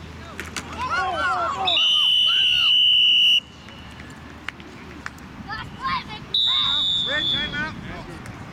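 Two long blasts of a referee's whistle, the first about two seconds in and the second about six seconds in, blowing the play dead after a tackle; the second is a little higher in pitch and falls slightly as it ends. Shouting voices come in between and before the first blast.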